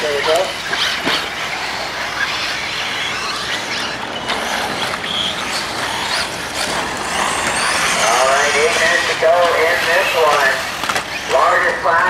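Electric 1/8-scale RC buggies racing on a dirt track: a steady high hiss and whine of motors and tyres, with a few short knocks. A race announcer's voice comes in over it in the last few seconds.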